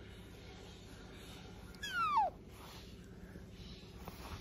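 A pet otter gives one short, high squeak that falls sharply in pitch, about two seconds in, while it bites and chews a person's finger.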